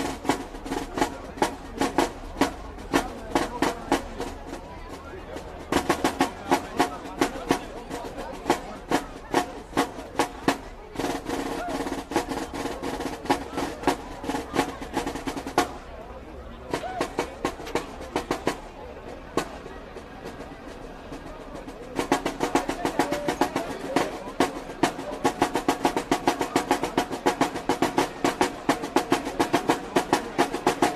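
Marching band drumline playing a fast cadence of snare and drum strikes, with held pitched notes underneath at times. It thins out for a few seconds in the middle, then picks back up loud and steady.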